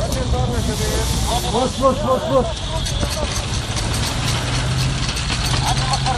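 A steady low engine hum, like a motor idling close by. Distant voices call out for about a second, roughly a second and a half in.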